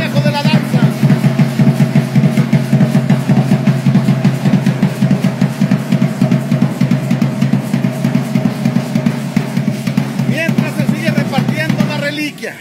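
Festival dance music: a drum beaten in a fast, steady rhythm over a sustained low tone, with no pause.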